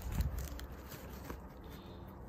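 Faint rustling of a fabric feed bag and strap being handled and wrapped around a bike stem, with a few small ticks over a steady low rumble.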